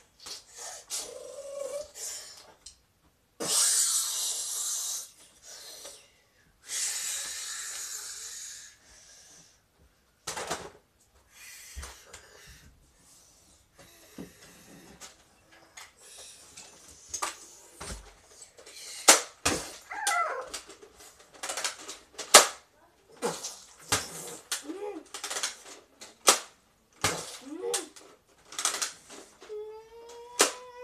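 A boy playing with a Nerf blaster: two long bursts of hiss early on, then a busy run of sharp clicks and knocks with short vocal noises among them.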